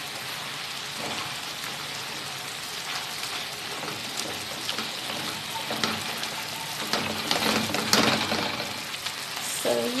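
Water spinach and eggplant sizzling in a soy-and-vinegar sauce in a nonstick wok, a steady hiss, while a silicone spatula stirs and scrapes through them. The stirring grows busier and louder in the second half.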